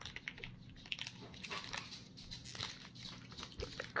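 Foil trading-card booster-pack wrapper crinkling in the hands as the torn pack is worked open and the cards pulled out: a run of small, irregular crackles.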